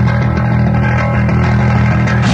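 Metallic hardcore punk recording: distorted electric guitar and bass holding one loud, sustained chord.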